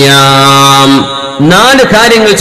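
A man's voice chanting: one long held note at a steady pitch for about a second, a short break, then a further gliding melodic phrase, in the style of recitation within a sermon.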